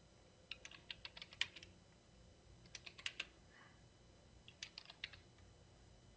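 Faint typing on a computer keyboard: three short bursts of key clicks.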